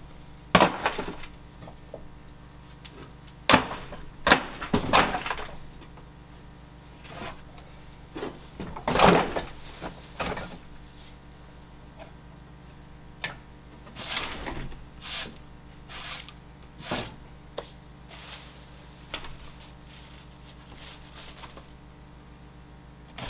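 Irregular knocks, bumps and short scrapes of objects being handled and set down on a wooden workbench, with a low steady hum underneath.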